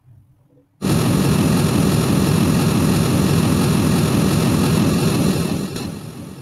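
Pink-noise test signal played through a loudspeaker for a timed Smaart transfer-function measurement of its new high-pass and EQ preset. It switches on abruptly about a second in as a loud, steady hiss and drops a little in level near the end.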